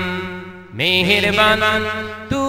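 Male voice singing a Bengali Islamic devotional song (gojol). A long held note fades, then the voice slides up into a new sustained note about a second in, over a steady low drone.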